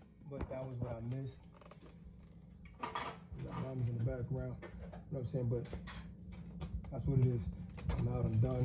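Faint voices talking over a steady low hum, with a few light clicks.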